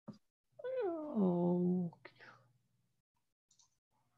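A single drawn-out vocal sound about a second and a half long, gliding down in pitch and then levelling off, with a short click just before it and a few faint clicks after it.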